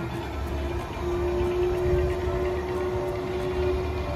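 Chair swing ride running: a low mechanical rumble with a steady hum held through most of the stretch.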